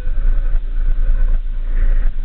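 Steady low rumble of engine and road noise heard from inside a moving road vehicle.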